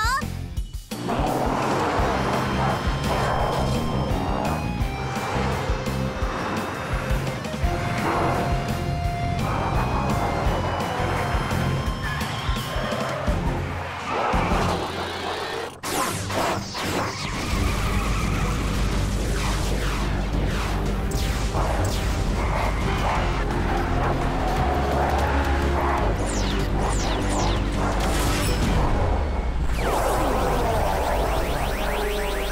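Animated action soundtrack: background music mixed with sound effects such as crashes and vehicles, with a brief break about halfway and a deep, steady low rumble from then on.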